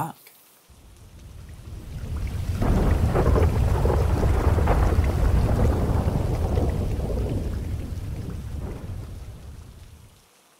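Rolling thunder with rain: a low rumble and crackle that swells in over the first couple of seconds, is loudest in the middle, then slowly fades out.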